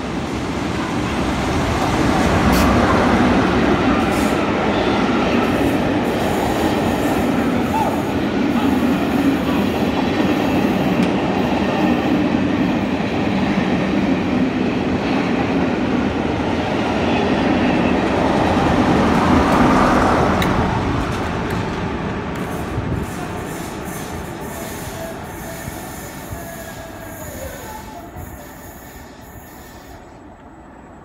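West Coast Railways Class 47 diesel-electric locomotive, with its Sulzer twelve-cylinder engine, passing close by, followed by its coaches rolling past with steady wheel and rail noise. The sound builds over the first few seconds, swells again about two-thirds of the way through, then fades away over the last third as the train recedes.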